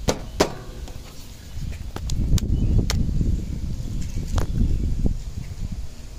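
Two sharp knocks in the first half second as painted wooden door-frame pieces are handled and fitted together, then a low rumble with a few light clicks for several seconds.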